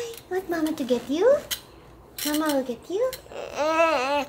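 A toddler babbling wordlessly: a string of short, high-pitched vocal sounds that swoop up and down in pitch, the longest one near the end.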